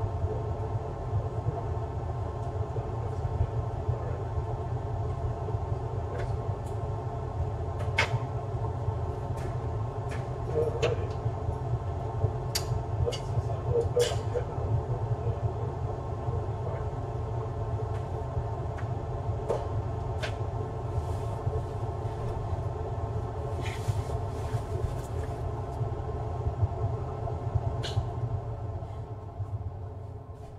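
A steady low machine hum with scattered light clicks and taps of tools and parts handled on a workbench; the hum falls away near the end.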